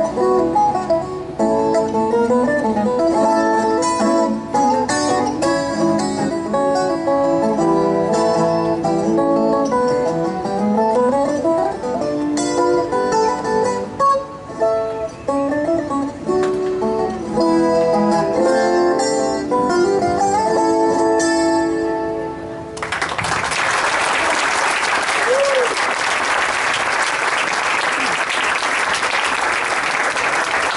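Colombian tiple played solo, a bambuco melody of quick plucked notes and strummed chords on its steel string courses. The piece ends about three-quarters of the way through, and audience applause follows.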